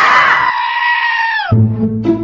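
A cat's long, drawn-out yowl while fighting another cat. It bends down in pitch as it breaks off about a second and a half in, and low background music follows.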